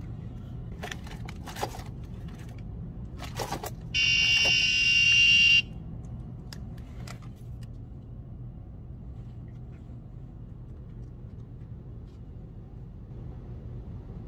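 Electronic buzzer on a homemade fall-detection watch prototype sounding one steady beep of about a second and a half, about four seconds in, signalling its emergency alert. A few light taps and handling clicks come before it, over a low background hum.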